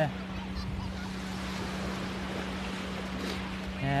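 Surf washing on the shore with wind rumbling on the microphone, over a constant low hum.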